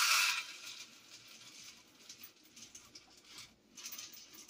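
Dry pasta being poured from a glass jar into a small cup: a loud rush of pieces at first, then a light patter of pieces trickling in, with a few more bursts near the end.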